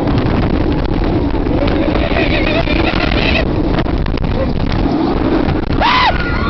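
Heavy wind rushing over the microphone of a rider's camera on a moving roller coaster. A high, wavering scream rises over it about two seconds in, and a short loud yell comes near the end.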